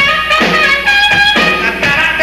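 Live rock band music: a horn holds long notes that step in pitch over drum hits about three quarters of a second apart.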